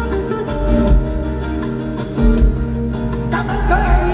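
Live rumba flamenca band playing: strummed acoustic guitars over heavy bass and drums, with a lead voice starting to sing about three seconds in.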